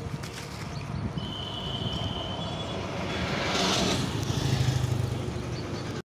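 Motor traffic going by on a road: a steady low rumble, with one vehicle swelling past near the middle. A thin, high, steady tone sounds briefly about a second in.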